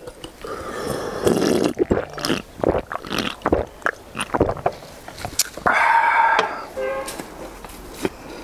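A person drinking from a can in gulps, with swallowing and mouth noises, and a short held vocal sound about six seconds in.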